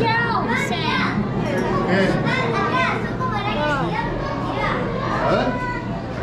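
Children's voices chattering and calling out, over a steady low hum.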